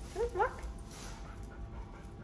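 A dog gives two short, rising whines in quick succession about half a second in.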